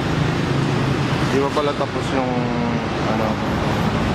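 Street traffic noise with a vehicle engine running close by. Short snatches of people's voices come in about halfway through.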